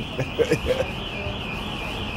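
Electronic alarm sounding a high warbling tone that rises and falls about four times a second.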